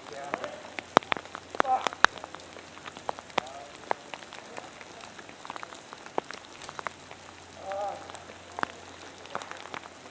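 Irregular sharp ticks and taps scattered through the whole stretch, with a few brief snatches of voices.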